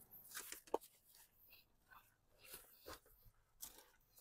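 Near silence with a few faint crinkles and small clicks of plastic seat-cover film being brushed.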